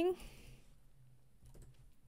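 Faint typing on a computer keyboard: a few soft keystrokes, mostly about one and a half seconds in.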